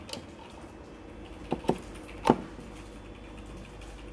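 A few sharp plastic clicks and knocks as a mains plug is pushed into a power inverter's socket, three in all, the last and loudest about two and a quarter seconds in.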